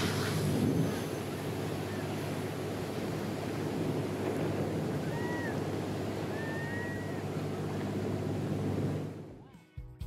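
Churning, foaming seawater and surf, a steady rush over a low hum, fading out shortly before the end.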